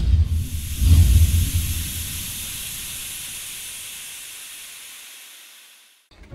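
Intro sound effect: a deep rumbling whoosh that peaks about a second in and dies away, over a hiss that fades out slowly until it is gone near the end.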